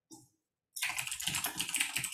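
Fast typing on a computer keyboard: one keystroke near the start, then a quick run of keystrokes from just under a second in.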